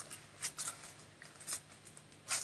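Scissors snipping through non-stick parchment paper in a few short cuts.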